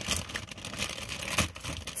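Soft packaging being handled, crinkling and rustling unevenly, with a sharper crackle about one and a half seconds in.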